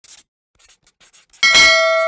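A single metallic, bell-like ding struck about one and a half seconds in and ringing on steadily as several clear tones, after a few faint clicks.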